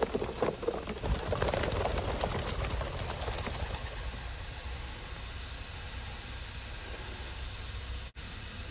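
A flock of fifteen racing pigeons bursting out of an opened release crate: a flurry of wing claps and flapping that thins out over the first few seconds as the birds fly off. A steady low rumble runs underneath.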